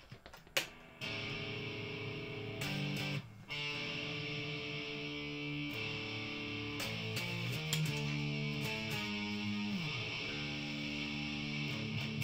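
Fender Stratocaster electric guitar on its hot (high-output) pickup, played through an amp: sustained chords start about a second in, break briefly after three seconds, then go on through several chord changes.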